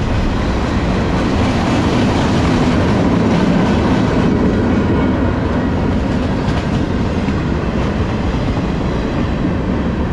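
Freight cars of a long CSX manifest train rolling past close by: a steady rumble of steel wheels on rail, with clickety-clack as the wheels cross rail joints.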